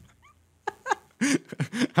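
Two people laughing in short, high-pitched bursts with breathy gaps between them, after a brief lull; a voice starts a word at the very end.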